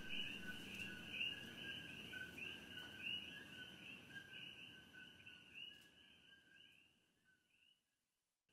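Faint animal chirping: a rapid train of short, high chirps at a steady pitch, dying away about six seconds in.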